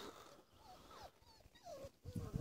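Faint whimpering of young puppies: a few short, high whines that bend up and down in pitch.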